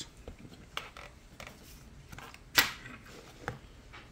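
A paper scratch-off lottery ticket being handled and set down on a table: light taps and rustles, with one sharper knock about two and a half seconds in and a smaller one near the end.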